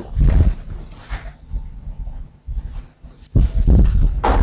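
Low thuds and rubbing noises come in two bursts, one right at the start and a longer one late on, with a few softer knocks between.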